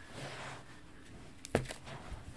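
Faint rustle of shrink-wrapped Blu-ray steelbook cases being handled as one is lifted from a stack, with one sharp knock about one and a half seconds in.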